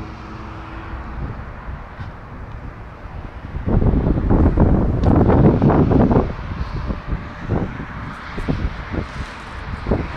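Wind buffeting the phone's microphone over a low steady background rumble, with a loud gust from about four to six seconds in.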